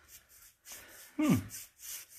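Paintbrush stroking wet chalk paint on the wooden side of a vanity: a soft, repeated brushing at about four strokes a second.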